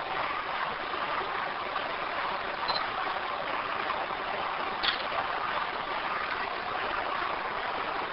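Steady hiss of a handheld audio recorder's background noise, with a faint tick about five seconds in.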